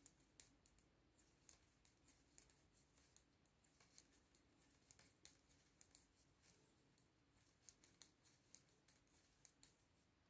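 Faint, irregular clicking of knitting needles as stitches are knitted across a row, over near silence.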